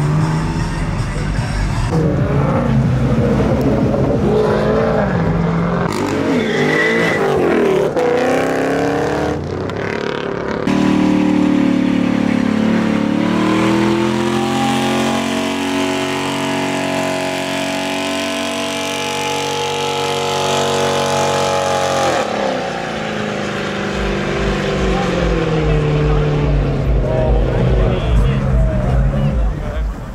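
Car engines revving hard and held at high revs during burnouts, the pitch rising and falling, with spinning tyres and crowd voices mixed in.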